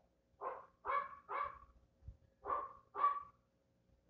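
A dog barking in play: five short barks, three in quick succession and then two more.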